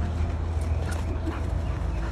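Two dogs playing, with a few short yips and whimpers over a steady low rumble.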